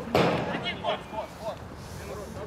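A single sharp thump just after the start, followed by a few short shouts from players on the pitch.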